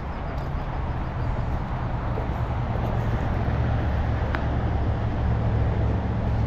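Steady rumble of distant road traffic, a low hum with a wash of tyre noise over it, with one short click about four and a half seconds in.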